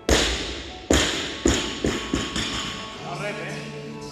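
Loaded barbell with rubber bumper plates dropped onto the gym floor: a heavy thud, then a second one about a second later and a few smaller bounces coming quicker as they die away.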